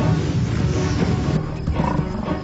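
Background music over the noise of an African buffalo herd running through grass, with deep animal roars.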